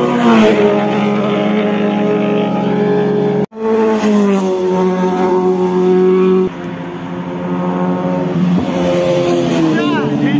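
Sport motorcycle engines passing at speed, their pitch dropping as each bike goes by. The sound cuts out abruptly about three and a half seconds in, then another bike passes, and the level steps down at about six and a half seconds before a further pass near the end.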